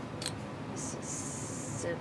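Quilting cotton being laid down and slid across a cutting mat: a light tap, then a short rustle and a longer swish of cloth.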